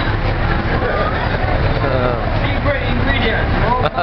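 Busy restaurant chatter: many overlapping voices talking over a steady low rumble.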